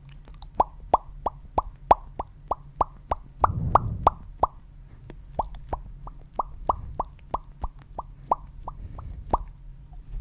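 Close-miked ASMR mouth popping noises: a quick, even series of sharp pops, about three a second, with a short pause about halfway through.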